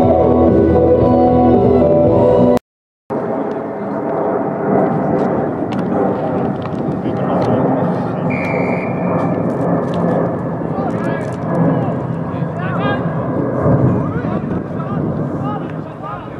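Background music for the first couple of seconds, cut off abruptly. Then comes live sound from a rugby pitch: spectators' and players' voices and shouts over outdoor noise, with a short referee's whistle blast about eight seconds in.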